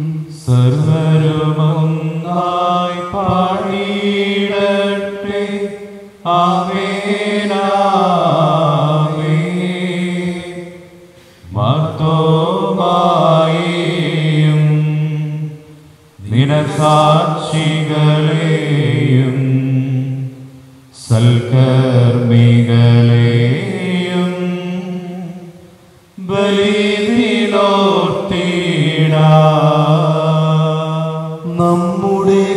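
Male voice chanting a sung liturgical prayer in long melodic phrases of about five seconds each, with short breaks for breath between them.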